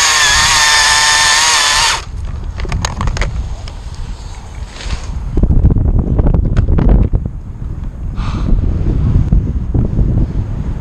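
Chainsaw held at full throttle, running steadily at high revs as the cut finishes, then dropping off sharply about two seconds in. After that, low rumbling with scattered knocks.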